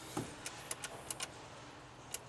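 Ignition key being turned and worked in a Mercury Mountaineer's steering-column ignition: a run of light, irregular clicks with no starter cranking, because the SUV doesn't turn on.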